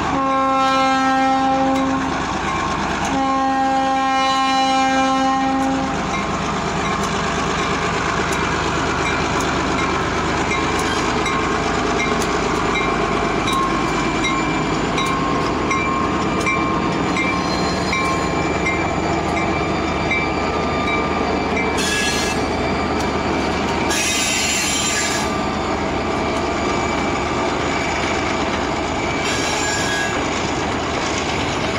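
Diesel freight locomotive's multi-note air horn sounding two long blasts, each about two to three seconds, then the steady rumble of a freight train rolling past with wheels clicking over the rail joints. Two brief high-pitched bursts of noise come near the end.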